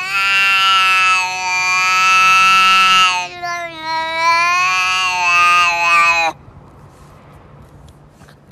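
A domestic cat's long, drawn-out yowl, held for about six seconds with a dip in pitch near the middle, then stopping abruptly.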